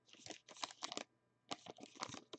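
Foil trading-card pack being torn open and crinkled by hand: faint, quick crackles in two clusters, the second starting about halfway through.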